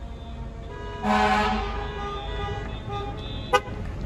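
A vehicle horn sounds with a loud blast about a second in, held for about half a second and then carrying on more faintly, over steady horn tones and traffic. A single sharp click comes near the end.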